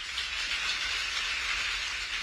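Audience applauding, a steady spread of clapping.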